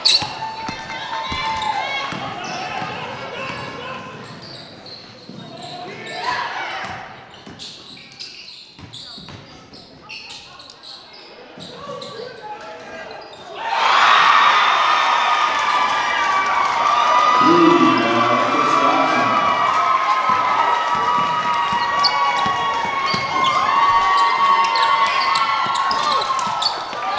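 Basketball game in a gym: a ball bouncing on the court and sharp clicks among players' and fans' voices that echo in the hall. About halfway through, the crowd noise rises sharply and stays loud.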